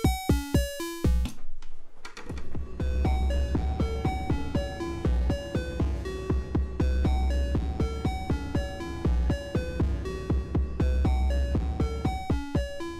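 Eurorack synth patch playing: a deep kick from a Noise Reap Foundation kick drum module pulses under a fast sequence of short pitched synth notes. The low kick drops out about a second in and comes back about three seconds in.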